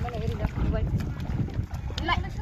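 Wind buffeting the microphone as a steady low rumble, with faint voices in the distance.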